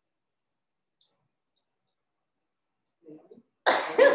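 Near silence for about three seconds, a faint voice, then just before the end a loud burst of laughter and talk.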